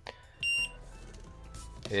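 A single short, high electronic beep from a LiPo cell voltage checker, about half a second in, as it powers up on the battery's balance lead.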